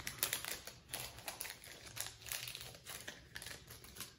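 Quiet, irregular crinkling and rustling of packaging being handled, a rapid patter of small crackles.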